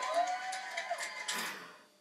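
A young man's soft, held-in laughter, fading away and cutting off abruptly at the end.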